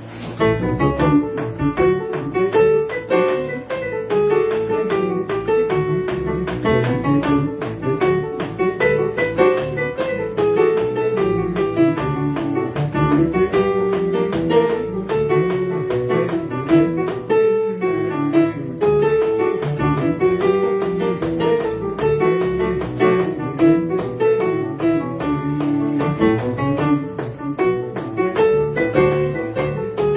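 Electronic keyboard playing an instrumental klezmer tune: a moving melody over a steady, evenly pulsed accompaniment with bass.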